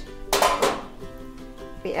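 Stainless steel lid lifted off a sauté pan of steaming vegetables, one short metallic clink about half a second in, over steady background music.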